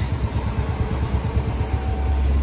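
Motorcycle engine idling with a low, pulsing rumble.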